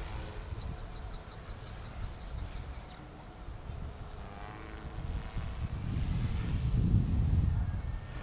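Wind buffeting the microphone, a rough low rumble that grows louder over the last few seconds. Faint high chirps repeat through the first few seconds.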